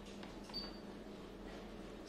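A short, faint high beep about half a second in: the keypad tone of a digital storage oscilloscope as a front-panel soft key is pressed, over a low steady hum.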